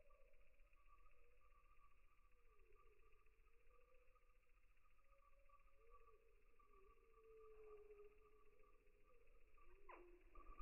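Near silence: faint steady hum with faint, slowly wavering tones.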